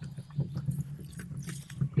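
Metal wheelbarrow being worked, its tray and handles rattling with many small irregular clicks over a steady low hum.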